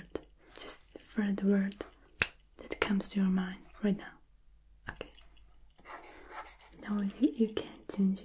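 A woman's soft-spoken voice in three short, quiet phrases, with a single sharp click a little after two seconds in.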